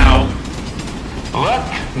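The song's music cuts off just after the start, leaving a train's low rumble with a fast, rattling clatter. A short voice sounds about one and a half seconds in.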